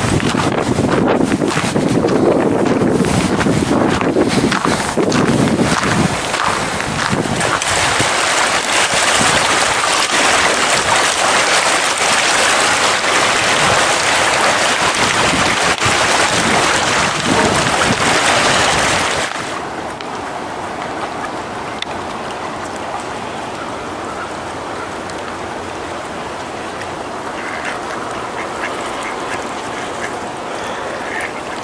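Wind on the microphone with a steady rush of wind and water for about the first two-thirds, then it drops suddenly to a quieter background where ducks quack a few times near the end.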